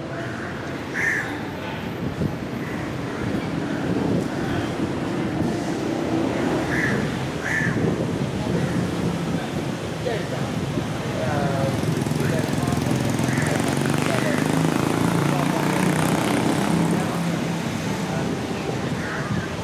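Street ambience of steady traffic, a low engine hum running throughout, with a few short high chirps early on and the traffic growing louder about two-thirds of the way through.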